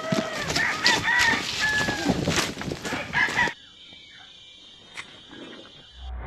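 A loud flurry of short bird calls, each rising and falling, that cuts off suddenly about three and a half seconds in. A much quieter stretch follows, with a single sharp click near the end.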